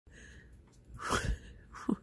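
A person's single short, sharp burst of breath about a second in.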